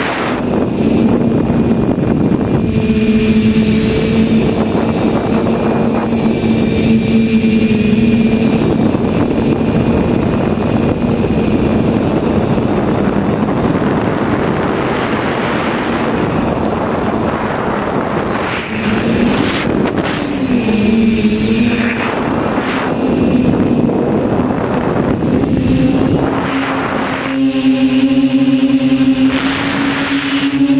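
Multirotor drone's brushless motors and propellers whining, picked up by the onboard camera with rushing air noise over the microphone. The motor pitch dips and rises about twenty seconds in, then settles at a higher note near the end as the throttle changes.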